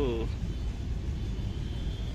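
A steady low rumble of outdoor background noise, after the tail of a spoken word at the very start.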